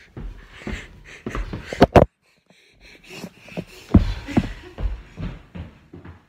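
Irregular knocks and thumps of a phone being dropped and knocked about. The loudest is a pair of sharp bangs about two seconds in. After a brief silence come more dull thuds.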